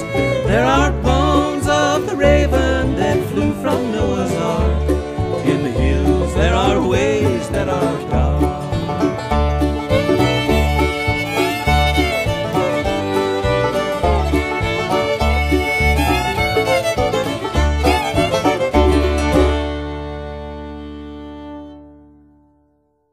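Bluegrass string band playing the instrumental ending of a song, with a fiddle leading over banjo, guitar and a steady pulsing bass. Near the end it lands on a final chord that rings out and fades away.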